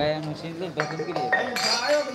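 Several men talking at once, with a few light clinks and short ringing tones of metal or glass.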